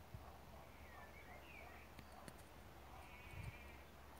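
Near silence: faint outdoor ambience with a few faint, high wavering animal calls, about a second in and again near the end.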